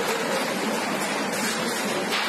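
Backhoe loader's diesel engine running as it works, heard as a steady rushing roar with a faint low hum underneath.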